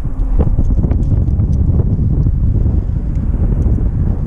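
Wind buffeting the microphone: a loud, steady low rumble, with a few faint clicks.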